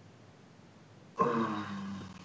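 About a second of near silence, then a man's voice makes a short, steady-pitched non-word sound, a drawn-out 'uhh' or hum that starts abruptly and trails off.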